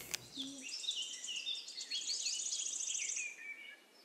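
Birds chirping: a run of short rising and falling chirps with a fast, high trill, fading out near the end.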